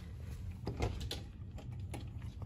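Brass doorknob on an interior door being turned and the door pulled open, the latch giving a few sharp clicks.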